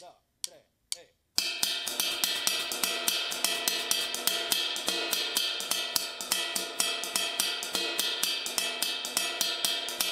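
Drum kit playing a 6/8 pattern on a cowbell, with cymbals and drums and the left foot playing a 6/8 clave. The quick, even strokes start about a second and a half in, after a few soft knocks.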